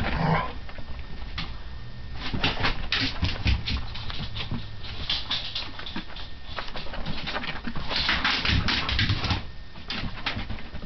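A teacup poodle and a Labrador retriever play-fighting: a short dog vocalisation right at the start, then a busy run of quick scuffling clicks and knocks.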